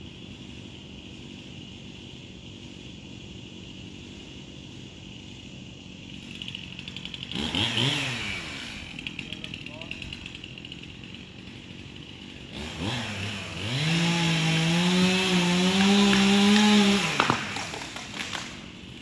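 Two-stroke chainsaw revving briefly, then running at full throttle for about four seconds as it cuts through the trunk of a spruce being felled, stopping suddenly near the end.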